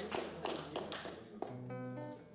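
Small audience applauding, the claps thinning out; about one and a half seconds in, an acoustic guitar chord is struck and rings on.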